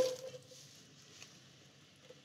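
A spoken word trailing off, then near silence: faint kitchen room tone with one small tick a little past the middle.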